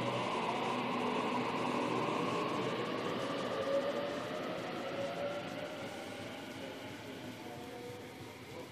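Waratah electric suburban train departing, its traction motors giving a whine of shifting tones over steady wheel and rail noise, fading gradually as it pulls away.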